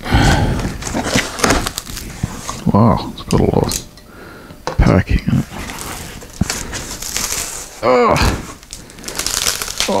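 A large cardboard box being opened by hand: its flaps are pulled up and back with rustling and scraping of cardboard, and bubble wrap starts crinkling near the end. A man grunts and exclaims about eight seconds in.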